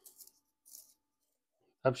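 Two faint, short scuffs in the first second as a plastic screw cap is twisted off a small plastic bottle by gloved hands. A man's voice starts near the end.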